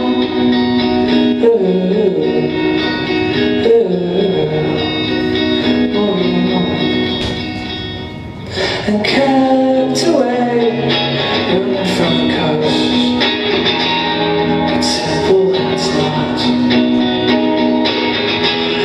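Indie rock band playing live through a club PA: electric guitars and bass over drums. The music thins and drops in level about eight seconds in, then the full band comes back in.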